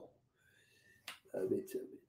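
A single sharp click about a second in, followed by a brief, quiet vocal sound from a man.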